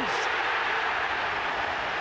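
Football stadium crowd cheering a home-side goal the moment it goes in, a steady, even wall of cheering.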